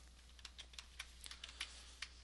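Faint, irregular small clicks of computer input, about a dozen spread over two seconds, over a steady low hum.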